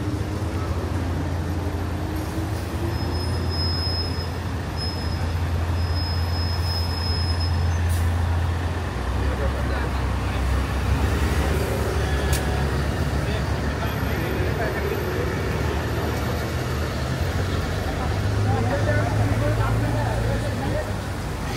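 Busy city-street traffic with buses close by: a steady low engine hum that drops in pitch about nine seconds in, over a wash of road noise, with a thin high whine for a few seconds early in.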